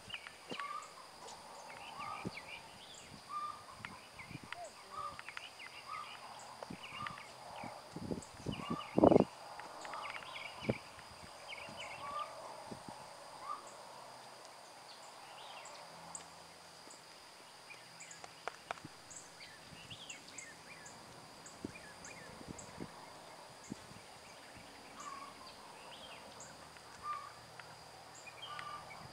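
Birds chirping and calling over a faint steady high insect drone, with a few dull thumps around eight to eleven seconds in, the loudest just after nine seconds.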